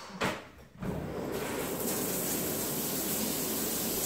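A brief knock near the start, then a shower starts running about a second in, its water spraying with a steady hiss.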